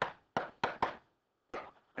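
A stylus tapping and scratching on a writing surface as letters are crossed out: about five short, sharp clicks in quick succession, four in the first second and one more about a second and a half in.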